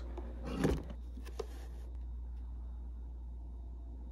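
Wire stripper clamping and pulling insulation off thin USB cable wires: a short sharp snip about three-quarters of a second in and a fainter click a little later, over a steady low hum.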